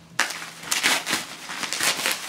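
Bubble wrap around a parcel crinkling and crackling as hands pull and tear it open, in irregular loud bursts that start abruptly just after the beginning.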